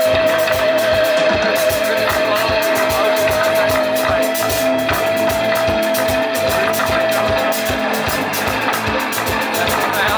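Live rock band jamming on electric guitars, bass guitar and drums with a fast, steady beat. One long note is held over the band, wavering in pitch for the first second or so, then steady, and ends about eight seconds in.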